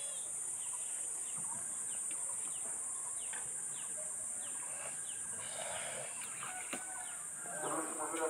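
Lakeside birds calling in short, mostly falling chirps over a steady high-pitched insect drone, with a single sharp click near the end.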